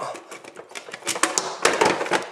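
A quick run of sharp clicks and clatter as a sandwich toaster's plug is pulled from the wall socket and the toaster and its cord are handled.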